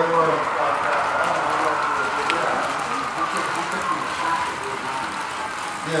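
American Flyer S-gauge model train running: a diesel locomotive pulling its freight cars along the track with a steady whirring, rolling rumble. A single sharp click comes about two seconds in.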